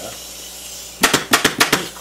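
Pneumatic upholstery staple gun firing a quick run of about six staples through cloth into a chair's wooden frame, starting about a second in.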